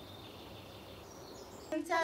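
Quiet outdoor background hiss with a faint high chirp about a second in; a voice starts just before the end.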